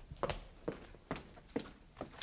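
A person's footsteps on a hard floor, walking steadily at about two steps a second.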